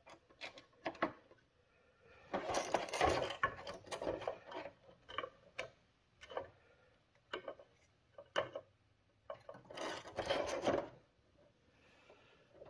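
Hard plastic parts of a cut-open battery pack housing being handled: scattered clicks and knocks, with two longer spells of rubbing and scraping, about two seconds in and again near ten seconds.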